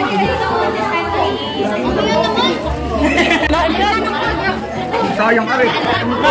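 Overlapping chatter of a group of students talking over one another.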